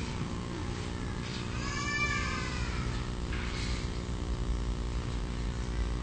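A short, high-pitched, voice-like cry that rises and falls in pitch, about two seconds in, over a steady low hum.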